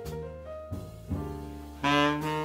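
Small jazz group playing live: piano and double bass carry sustained notes, and a tenor saxophone comes in loudly near the end.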